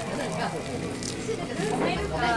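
Background chatter of people talking in a busy restaurant.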